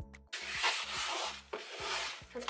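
A wipe rubbed back and forth across the bottom of an empty drawer, cleaning it. The rubbing starts a moment in, is strongest for about a second, then softens.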